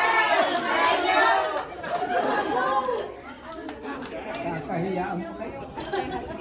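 Indistinct chatter of several people talking at once in a large hall, louder for the first three seconds and then dying down.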